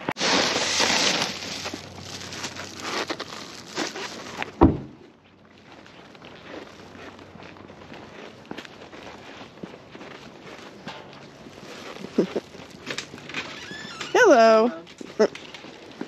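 Road and car noise, cut off by a single loud thunk like a car door shutting about four and a half seconds in. Then quieter footsteps and rustling of a carried delivery bag, and a short swooping vocal call near the end.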